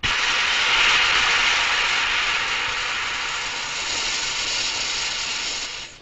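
Long hiss of gas escaping from a gas-inflated cake punctured with a fork: the cake deflating. It starts suddenly, fades slightly and stops just before the end.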